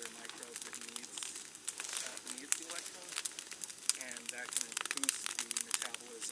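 Wood fire blazing in an open metal cone kiln, crackling with many sharp, irregular snaps and pops as it burns wood down to charcoal.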